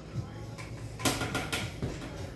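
A plastic fork scraping and tapping on a disposable plate, in a short run of quick scrapes about a second in.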